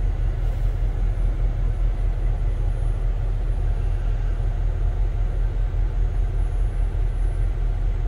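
Kenworth semi truck's diesel engine idling steadily, a low, even rumble heard inside the parked cab. The truck has been pulled over for a parked DPF regeneration because the filter is full and the engine was derating.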